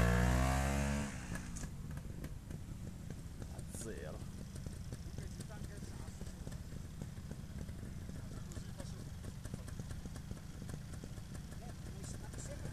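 Trials motorcycle engine revving loudly as the bike climbs a steep rocky bank, its pitch falling before it drops away about a second in. A low steady rumble follows.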